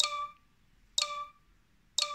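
Apple Watch speaker sounding three short, bright chime beeps, one a second, each ringing out briefly. They are the 7 Minute Workout app's countdown at the end of a rest break, just before the next exercise starts.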